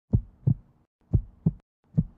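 Heartbeat sound effect: paired low thumps in a lub-dub pattern, about one pair a second, with two full beats and a third beginning at the end.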